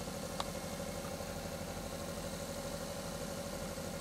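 WAECO compressor-type truck parking air conditioner running: a steady hum with a fast low pulsing under a steady mid-pitched tone. A small click about half a second in.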